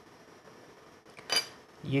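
A single short metallic clink a little over a second in, from the metal frame and parts of a disassembled motorised fader being handled as its slider is pulled out to free the drive belt.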